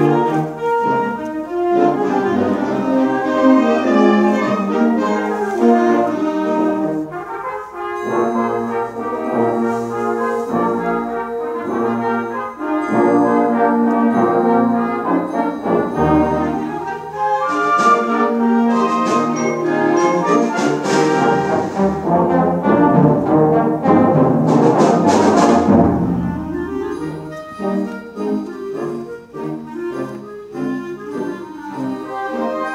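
A secondary school concert band playing, with the brass to the fore. Percussion crashes come in about two-thirds of the way through, and the music turns softer near the end.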